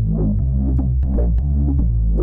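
Electronic beat built on a synth bass line from the Softube Monoment Bass plug-in, with kick and sharp hi-hat ticks. Each bass note opens with a resonant filter sweep that falls in pitch, and the filter cutoff and resonance are being turned as it plays.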